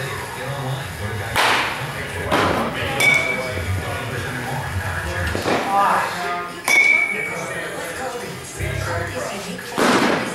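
A metal youth bat hitting baseballs, each contact a sharp crack, some with a short high ping, several hits a few seconds apart.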